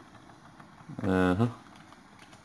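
A man's voice drawing out one hesitant "haa" about a second in, with a few faint clicks in the quiet around it.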